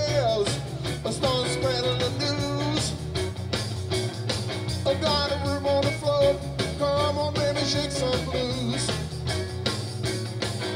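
Blues-rock band playing live at full volume: drum kit, bass and electric guitar, with a bending melody line riding on top.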